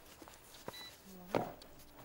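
A supermarket checkout's barcode scanner gives one short, high beep, among light clicks and knocks of groceries being handled on the counter.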